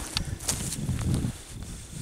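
Footsteps crunching on dry, dead grass and leaves: a few irregular steps with crackly clicks.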